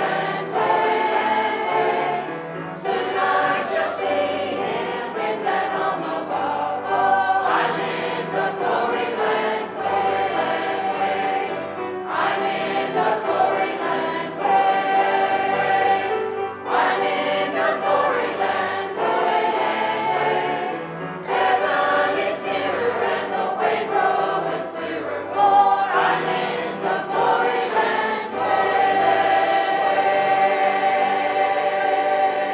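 Mixed-voice church choir of men and women singing a hymn together, in sustained phrases with short breaks between them.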